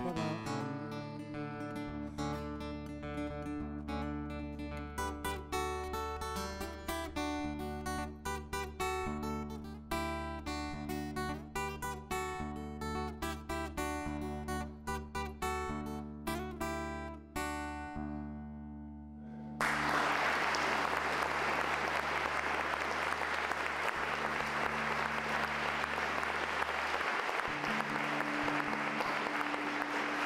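Acoustic guitar played with the fingers, a run of quick plucked notes that stops about eighteen seconds in and rings out. Audience applause then starts suddenly and carries on to the end.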